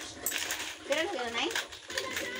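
Loose coins clinking and rattling as they are handled by hand, in a few sharp clicks.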